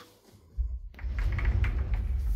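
Sliding wardrobe door rolling open along its track. It makes a low rumble with a light rattle, starting about half a second in.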